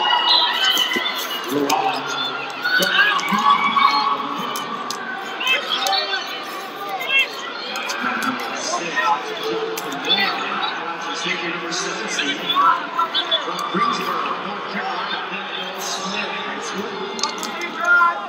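Scattered shouts and calls from people around a college wrestling mat, overlapping and irregular, with no clear words.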